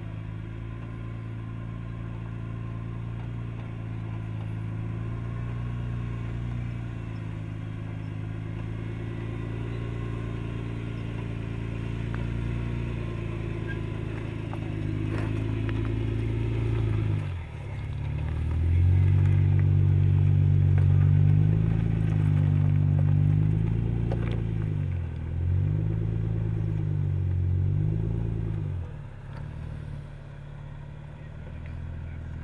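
Jeep Wrangler pickup's engine running at low, steady revs as it crawls over rock, then, after a brief dip, revving up and down several times, louder, as it works over the terrain, before easing off near the end. A few faint clicks sound along the way.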